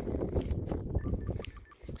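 Low wind rumble on the microphone with light handling noise of a Motorola Razr V3M flip phone, and a few faint, short, high-pitched beeps in the second half.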